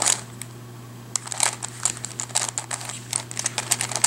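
Plastic Witeden 3x3 Mixup Plus puzzle cube being twisted by hand: a quick, irregular run of small clicks and clacks as its layers turn, busier from about a second in.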